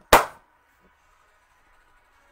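A single sharp hand clap right at the start.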